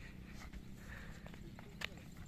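Faint footsteps of people walking up a dirt path in flip-flops, a few light scattered steps with one sharper click near the end, over a low steady wind rumble on the microphone.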